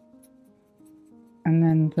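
Soft background music of held notes, with faint scratching of a watercolour brush on paper. About one and a half seconds in, a voice speaks, louder than the rest.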